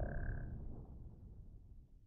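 Fading tail of a logo-intro sound effect: a brief high tone in the first half second over a low rumble that dies away.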